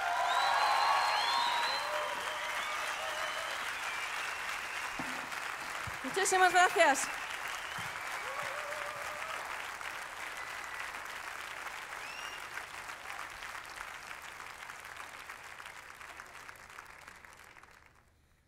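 A seated concert audience applauding and cheering at the end of a song, with scattered whistles and one loud shout from the crowd about six seconds in. The clapping is fullest at the start and gradually dies away to nothing just before the end.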